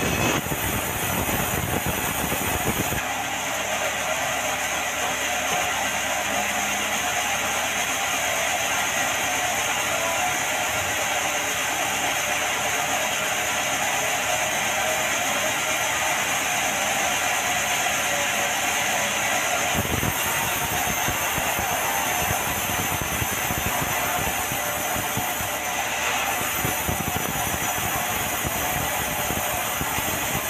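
Vertical band sawmill running steadily while its blade cuts red meranti timber, a dense hiss of sawing over the machine's noise. The low rumble drops away about three seconds in and comes back near twenty seconds.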